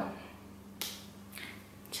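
A short sharp click about a second in, then a fainter one about half a second later, over a faint steady hum.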